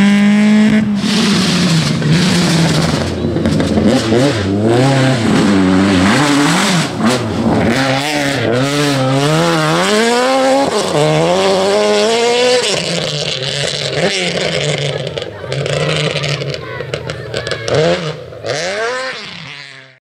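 Rally car engines revving hard, the pitch climbing and dropping again and again through gear changes and throttle lifts as the cars go by. The sound fades out at the very end.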